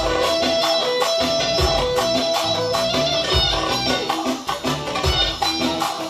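Loud band music with a steady drum beat under a long-held melody line.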